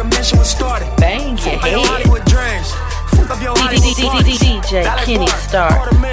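Hip hop track from a DJ mix: booming 808 kick drums that drop sharply in pitch, a steady deep sub-bass, hi-hats and a rapped vocal.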